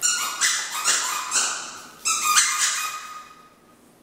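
Plush squeaky toy being squeezed in a Chihuahua puppy's jaws, giving a run of loud pitched squeaks, then a second run about two seconds in that fades out before the end.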